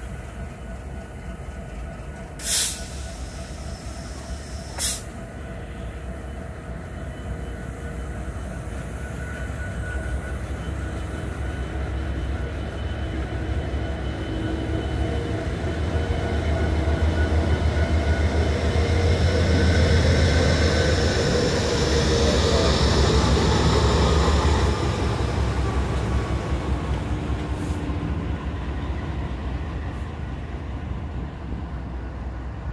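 A consist of diesel locomotives rolling past close by. Their deep engine rumble builds to its loudest about two-thirds of the way through and then eases off, with a high whine that falls in pitch. Two sharp clanks come a few seconds in.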